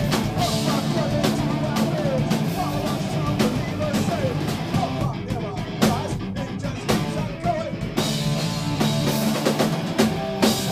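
Punk rock band playing live: electric guitar, bass guitar and drum kit.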